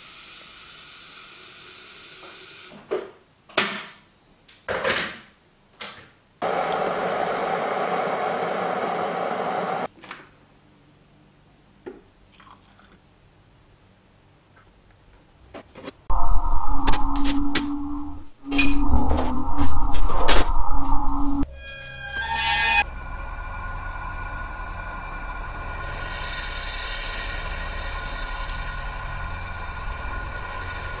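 Kitchen clatter of short knocks, then a few seconds of steady running water at the sink, then near silence. After that comes a loud low drone with sharp clicks, and from about two-thirds of the way through, sustained background music.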